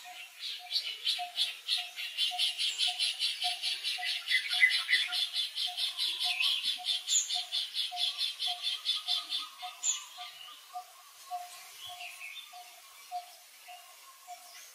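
Small animals calling outdoors: a rapid, even high pulsing, about five pulses a second, that swells and then stops about ten seconds in, over a slower steady beat of lower chirps about twice a second.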